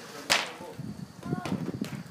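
A soccer ball being struck, one sharp smack about a third of a second in.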